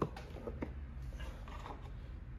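Wooden parts of an antique mahogany writing slope being handled and pushed back into place: one sharp click at the start, then a few faint clicks and knocks.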